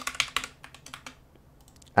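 Computer keyboard being typed on: a quick run of keystrokes in the first half-second, then a few fainter, scattered key taps.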